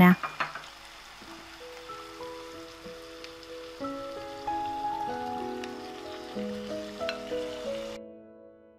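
Chicken marinade poured into a hot pot of stir-fried chicken, sizzling and bubbling up in the pan, with soft background music, a slow melody, coming in about a second and a half in.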